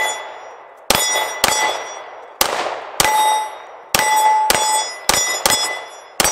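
A string of about nine 9mm shots from a Glock 19 Gen 4 pistol, spaced roughly half a second to a second apart. Each shot is followed by a steel plate target ringing out briefly with a clear metallic tone as it is hit.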